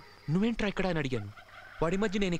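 A man's voice in rapid, warbling syllables. It breaks off about one and a half seconds in and starts again near the end.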